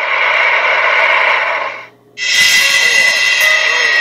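Steady running noise of a moving train that cuts off about two seconds in. After a short gap, a different steady sound with several held tones begins.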